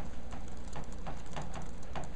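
Chalk tapping and scratching on a chalkboard as someone writes by hand: a run of short, sharp strokes, a few each second.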